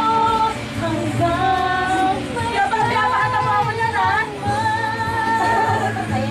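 A woman singing a slow song with musical accompaniment, holding long notes that bend at the ends.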